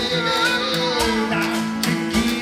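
Live blues band playing an instrumental passage: a harmonica plays a melody with sliding notes over a strummed acoustic guitar, with steady percussion strokes and a cymbal keeping the beat.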